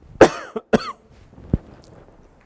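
A person coughing twice, about half a second apart, followed a moment later by a short thump.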